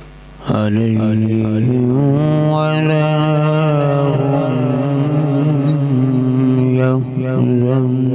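A man's voice in melodic Quran recitation (tilawat), long drawn-out ornamented notes, amplified through a handheld microphone. It starts about half a second in, with a short break for breath near seven seconds.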